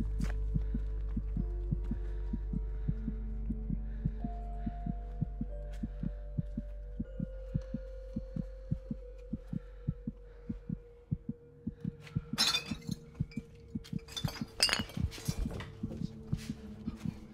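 Film score and sound design: a low drone and held synth tones under a fast, regular pulse of soft knocks, the drone fading out about two-thirds of the way through. Two short, loud bursts of noise break in near the end.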